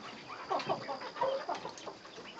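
Silkie chickens clucking: a string of short, quiet calls from the flock, several in quick succession.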